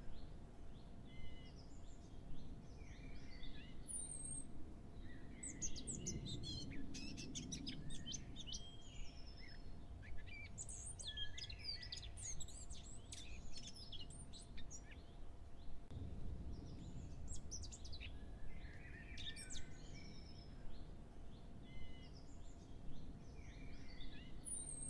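Small birds chirping and twittering in scattered clusters of quick high calls, with short lulls between them.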